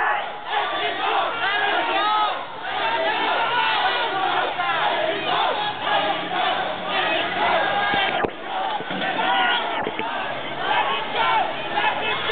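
A crowd of protesters shouting, many voices overlapping at once with no one voice standing out. Two brief knocks come through about eight and ten seconds in.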